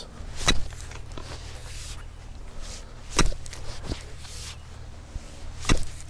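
A pickaxe's pick end striking and breaking up hard soil. There are three strikes about two and a half seconds apart, with a lighter knock just after the second.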